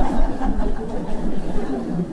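An audience laughing together, the laughter slowly dying away.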